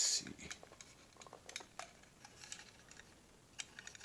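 Small irregular clicks and taps of fingers handling a lightweight, mostly plastic 1:64-scale model trailer as its rear door is worked open, with the sharpest click at the start.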